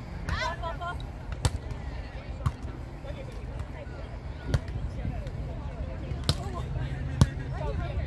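A volleyball being struck by players' hands and arms during a beach volleyball rally: about five sharp smacks at uneven gaps of one to two seconds, over a steady low rumble.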